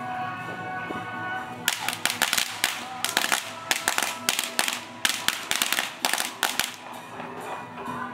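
A string of firecrackers goes off about two seconds in, popping in rapid, irregular cracks for about five seconds, then stops. Procession music plays underneath.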